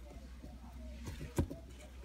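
A single sharp click about one and a half seconds in, over a low steady hum, as a variable bush viper strikes a thawed mouse held out on feeding tweezers.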